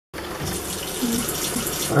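Kitchen mixer tap running, its stream splashing into a ceramic mug held under it at a stainless-steel sink.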